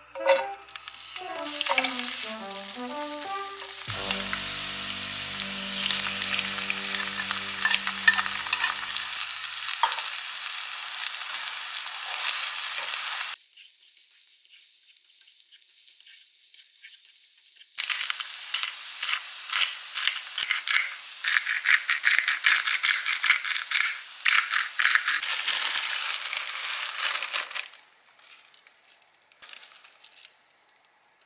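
Bean sprouts sizzling loudly in hot sesame oil in a nonstick frying pan, the sizzle starting suddenly a few seconds in. After a quieter spell midway, the sizzling returns with wooden chopsticks stirring and scraping through the sprouts and egg in the pan.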